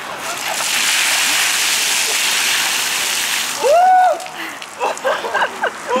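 Buckets of ice water poured over two people: a loud splashing gush lasting about three seconds. It is followed by a short loud shout and a few brief vocal exclamations.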